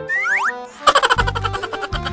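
A comic editing sound effect of two quick rising pitch glides, followed about a second in by upbeat background music with a quick beat and bass.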